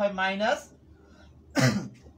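A person gives a single short cough, about one and a half seconds in, after a brief bit of speech.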